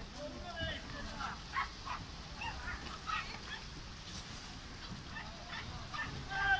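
Distant voices calling and shouting in short bursts over a low steady rumble, as from players on the water.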